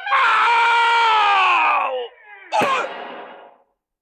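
The cartoon wolf's long scream, sliding down in pitch as he falls from the tightrope, followed by a sharp crash about two and a half seconds in that fades away.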